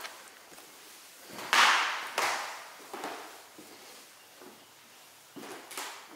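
Footsteps on a bare hardwood floor, echoing in an empty room, at a walking pace. The loudest step is about a second and a half in.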